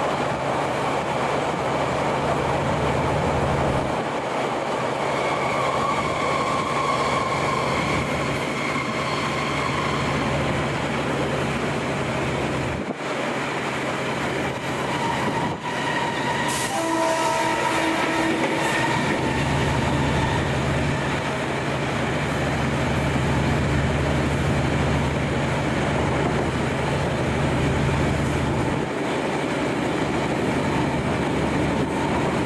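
A passenger train running along the track, heard from its open-air viewing carriage: a steady, loud rush of wheel, rail and wind noise with a low rumble that comes and goes. Brief pitched tones sound about halfway through.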